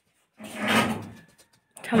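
A cloth pad rubbed across the inside of an iron kadai: one scraping swish beginning about half a second in and fading after about a second. A voice starts just at the end.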